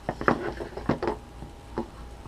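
Small cardboard gift boxes handled and opened: a quick run of sharp taps and knocks in the first second, then one more a little later, with light rustling between.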